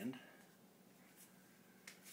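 Near silence: room tone between spoken phrases, with one short click just before the end.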